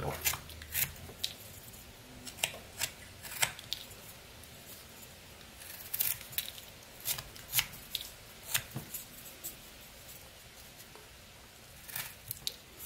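Small pocket-knife blade slicing shavings off a carved wooden blank: a series of short, crisp cutting strokes at irregular intervals, with a couple of brief pauses between runs of cuts.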